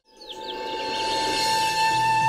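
Background score fading in with one long held flute note, with a few short bird chirps near the start.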